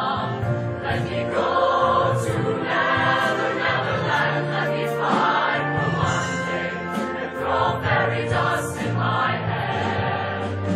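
Mixed show choir of male and female voices singing in harmony, with band accompaniment, holding notes that change every second or so.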